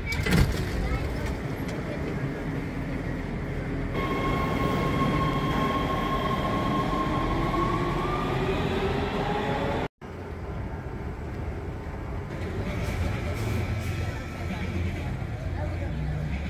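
LA Metro subway train moving through an underground station: rumbling wheel and rail noise with a steady high-pitched whine and an electric motor tone rising in pitch as the train gathers speed. The sound cuts off abruptly about ten seconds in and gives way to a lower, steadier rumble.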